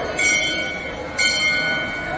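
Hanging temple bell struck twice, about a second apart, each strike ringing on with several clear high tones that slowly fade, over faint crowd chatter.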